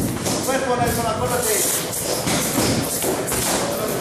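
Athletic tape being pulled off the roll with a short rasp for a boxer's hand wrap, among scattered thumps and taps, with indistinct voices in the room.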